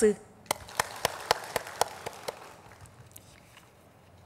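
Audience applause: a few sharp claps close to the microphone, about four a second, over a haze of clapping that dies away by about three seconds in.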